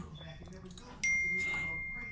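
A single high ding about a second in: one clear tone that starts sharply and rings on, slowly fading.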